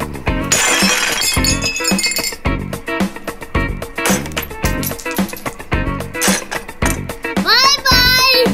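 A ceramic plate shattering under hammer blows, with pieces clinking, about half a second to two seconds in, over background music with a steady beat that runs throughout.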